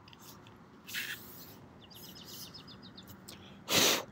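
Birds chirping at dusk, with a quick trill of short high notes about two seconds in. Near the end, a brief loud rush of noise covers everything.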